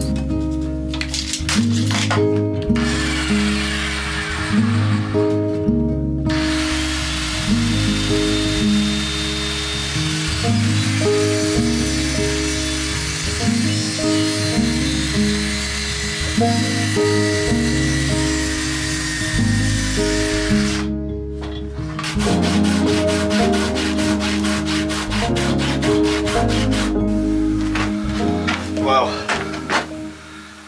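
Background music with a steady bass line, and a handheld power tool cutting into a softwood timber beam underneath it as a continuous whining, rasping noise from a couple of seconds in until about two-thirds through, with one brief break. Near the end only strummed music remains.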